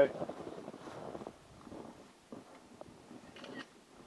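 Faint, indistinct voices over low background noise, with a few soft knocks and rustles.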